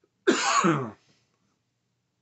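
A man coughs once into his fist, a single burst of under a second that starts about a quarter second in.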